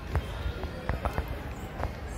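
Soft thumps of walking picked up by a handheld phone: about four irregular knocks in two seconds over low street background noise.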